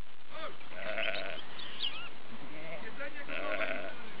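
Faint bleating from sheep further off, one call about a second in and another about three and a half seconds in, with a few faint high chirps in between.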